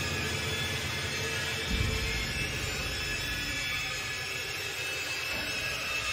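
Dark horror-ambience drone: a steady airy hiss like wind, with a low rumble underneath that shifts about two seconds in.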